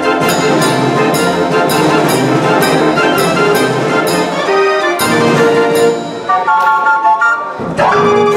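A 52-key Verbeeck/Verdonk Dutch street organ with an added set of trombone pipes playing a tune with a steady beat. The music thins to a lighter passage near the end and pauses briefly before the next phrase.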